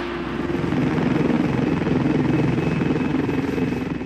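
Helicopter in flight, its rotor blades chopping in a rapid, steady beat. The sound swells in the first second and begins to fade near the end.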